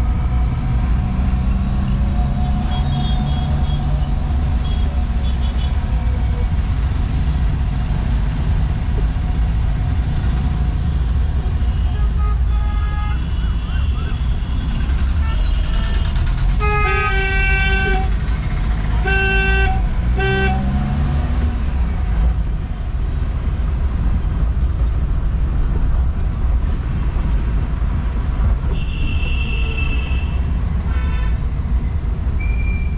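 Steady engine and road rumble inside a moving car in city traffic, with vehicle horns honking: a few short toots about twelve seconds in, then three loud horn blasts about a second apart, and a higher-pitched horn near the end.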